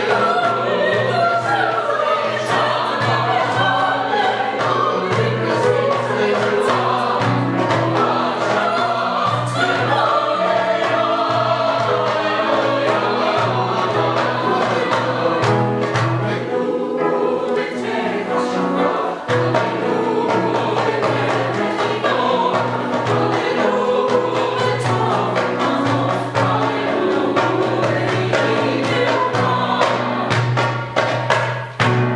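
Mixed choir of men's and women's voices singing a choral piece with grand piano accompaniment, in held, sustained lines. The sound thins briefly a little past the middle, then the full choir comes back in.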